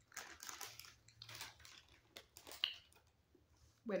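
A person chewing a sugar-crystal-coated gummy candy square, with soft wet clicks and smacks over about three seconds that then die away.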